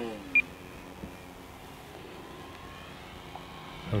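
Electric RC plane's motor and propeller whine, falling in pitch and fading in the first half second. A short high beep follows just after, then a faint steady hum for the rest.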